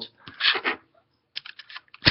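Computer keyboard keys clicking: a short noisy stretch, then a quick run of several keystrokes in the second half.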